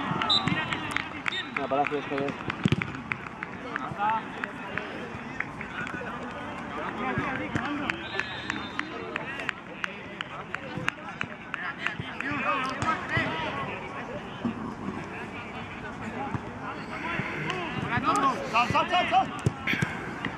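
Several people's voices calling and shouting across an outdoor football pitch, overlapping and mostly indistinct, louder near the end, with scattered sharp knocks.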